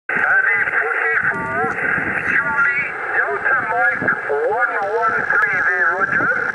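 A distant operator's voice received over the speaker of a Kenwood TS-50 HF transceiver on 27.645 MHz, the thin, narrow-band sound of a voice coming in over the radio.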